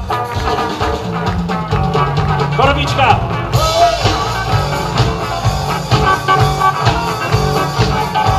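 Live rock band playing a groove on bass and drums while the keyboard player, on a Roland VR-09, takes a short feature after his introduction. A voice calls out briefly about three seconds in, and the keyboard sound turns brighter just after.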